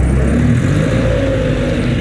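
Motor scooter riding slowly in city traffic, heard from the handlebars: a steady rush of wind and road noise on the microphone with the engine running underneath. A low hum drops away about half a second in, and a faint whine rises slightly.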